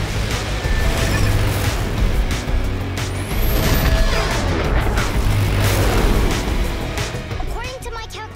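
Cartoon action soundtrack: music under a racing car's engine and sharp sound-effect hits, with a rising whistle about three seconds in. It eases off near the end.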